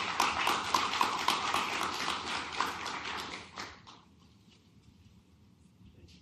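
Audience applauding, dying away about four seconds in.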